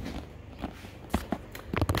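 Footsteps on a hard plank floor, a few irregular steps about half a second apart, as someone walks across a room.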